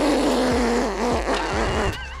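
A man's long, drawn-out, rough excited cry of nearly two seconds, its pitch wavering, over a loud rushing noise.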